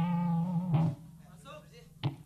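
A distorted electric guitar note rings on with a steady low pitch and wavering overtones, then is choked off with a short thump about a second in. Faint talking follows, and a sharp knock comes at the end.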